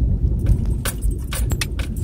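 Low rumble of a vehicle heard from inside its cab, with a run of sharp clicks and rattles like jangling keys from about half a second in.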